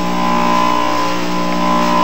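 Electric juicer motor running, a loud steady hum that holds one pitch throughout.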